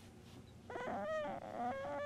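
A domestic cat giving a soft, drawn-out meow in two parts, starting just under a second in. It is a drowsy protest at being disturbed while trying to sleep.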